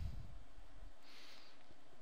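Quiet room tone with a steady faint hiss, a soft low thump at the start, and a brief faint breathy hiss about a second in.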